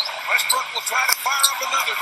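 Basketball TV broadcast audio: a commentator's voice in short phrases over arena crowd noise, sounding thin and tinny with no bass.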